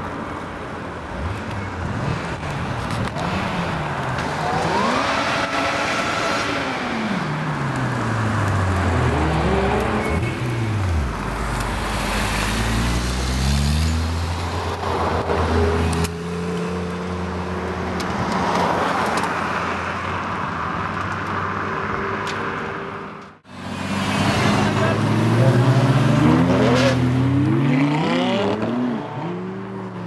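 Several sports-car engines revving and accelerating as cars drive past one after another, their pitch rising and falling. There is a brief cut about two-thirds of the way through.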